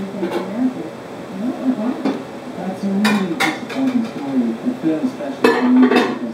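Dishes and utensils clinking in a kitchen: two sharp clinks about three seconds in and a quick run of them near the end, over ongoing conversation.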